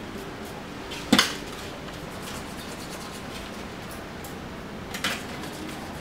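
Trigger spray bottle sprayed twice onto a motorcycle drive chain to soak it in diesel, a short spray about a second in and a weaker one near the end.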